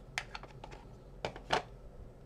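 Light plastic clicks and taps from a Memento ink pad as its lid is taken off and the pad is set down on the work mat. There are several short clicks, and the loudest comes about a second and a half in.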